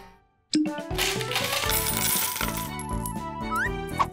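Cartoon sound effect of coins clinking and rattling as they are tipped out of a tin coin bank onto a table, over background music. It follows a brief silence at the start, and short rising whistle-like glides come near the end.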